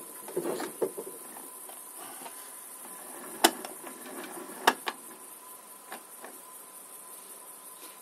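Hand-cranked plastic ball winder turning as hand-spun wool yarn is wound onto it: a quiet mechanical whirr with a few sharp clicks, the loudest two about three and a half and four and a half seconds in.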